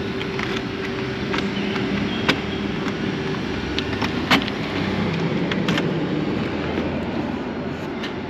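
Steady hum and rush of vehicle noise, with a held tone that fades out about three seconds in and a few sharp clicks scattered through it.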